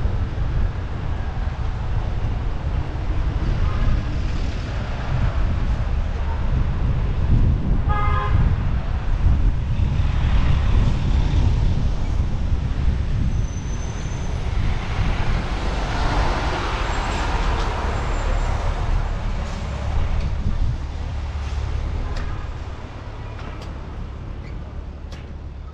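City traffic and wind rumbling on the microphone of a bicycle moving through street traffic. A vehicle horn toots once, briefly, about eight seconds in.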